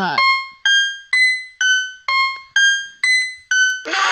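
A high-pitched keyboard melody of single struck notes, about two a second, each one fading quickly before the next.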